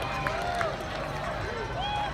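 Voices of a roadside crowd of spectators: indistinct calls and chatter, with no clear words.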